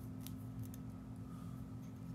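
Steady low hum of room tone with a few faint light ticks in the first second, from tying thread being looped by hand around a jig held in a fly-tying vise.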